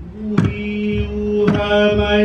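Hawaiian chant sung on one long held note, accompanied by a couple of sharp strokes on an ipu heke double-gourd drum.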